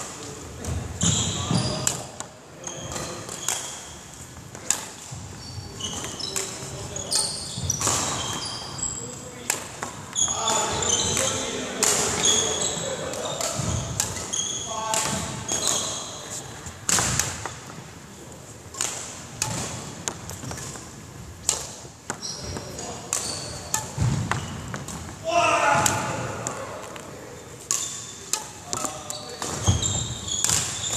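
Sports shoes on a wooden hall floor during badminton footwork drills: repeated thuds of landing steps and lunges, mixed with many short high squeaks of rubber soles.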